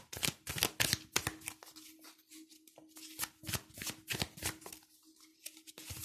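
A deck of tarot cards being shuffled by hand: a rapid, irregular run of short card flicks and slaps.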